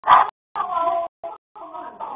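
Voices of adults and children talking in a room, picked up by a security camera's microphone, the sound cutting in and out with short gaps of silence. A loud, brief voice stands out just after the start.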